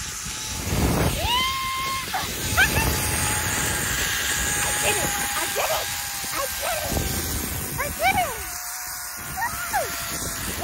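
Zipline trolley pulleys running along the steel cable with a thin, steady whine that slowly falls in pitch, under wind rushing over the microphone. The rider's short whoops and laughs come in over it.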